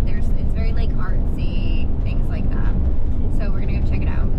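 Steady low road and engine rumble inside the cabin of a moving Ram ProMaster camper van.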